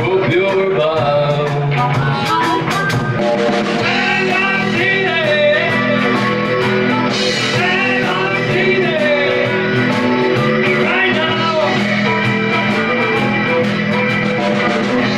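Live blues-rock band playing with electric guitars, bass, keyboard and drums, a harmonica playing bent, wavering notes over the top.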